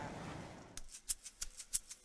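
Outdoor background fading out, then a run of sharp percussive clicks, about four or five a second, from a rattle or shaker at the start of a music track.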